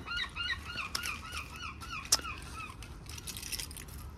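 Birds calling over and over: short, repeated calls in quick succession, a few a second, with a single sharp click about two seconds in.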